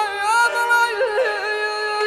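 Azerbaijani Segah mugham sung by a male khanende: the voice holds a high sustained note, then breaks into quick, trill-like melismatic ornaments about halfway through.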